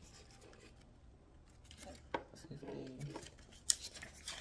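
Paper play-money bills handled and counted out by hand: soft rustling with a few crisp snaps, the sharpest near the end.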